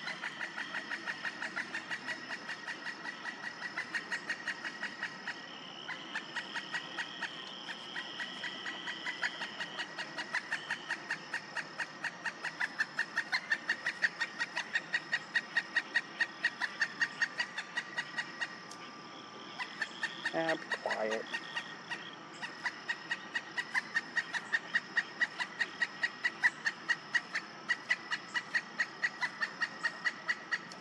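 A steady, rapid series of high pulsed animal calls, about five pulses a second, growing louder about twelve seconds in. A brief lower call comes around twenty seconds in.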